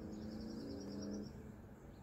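A songbird's rapid trill, a fast run of about a dozen short high notes lasting just over a second. It sounds over a low, steady held tone that stops at the same moment.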